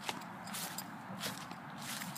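Footsteps through dry grass, four steps at a steady walking pace, with a light rustle between them.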